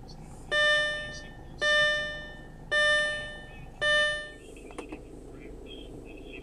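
2006 Audi A4's instrument-cluster warning chime sounding four times, about a second apart, each a bright bell-like tone that fades out. The engine idles low underneath, and there is a faint click near the end.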